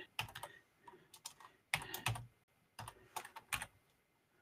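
Computer keyboard typing, in four or five short runs of keystrokes with brief pauses between them.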